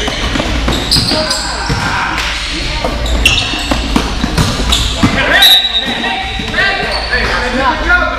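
Basketball game in an echoing gym: a ball bouncing on the court and sneakers squeaking on the floor as players run, several short high squeaks, over indistinct spectators' voices.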